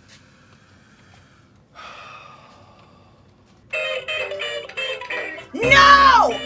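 Toy electric guitar playing a tune of stepping notes, starting about two-thirds of the way in after a faint short sound a couple of seconds in. Just before the end a louder note that slides up and down comes in over it.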